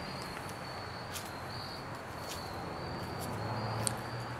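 Crickets trilling faintly and steadily at a single high pitch, the song breaking off now and then, over a low background hum. A few light clicks sound through it.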